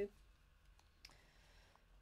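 Near silence with a few faint clicks as a small piece of card is handled and moved over a card.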